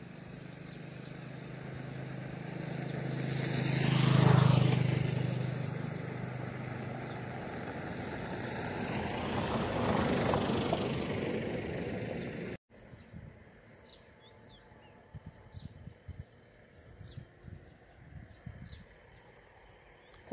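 Two motor vehicles passing by, each growing louder and then fading, the first loudest about four seconds in and the second around ten seconds. The sound then cuts off abruptly, leaving a quieter stretch with faint short chirps.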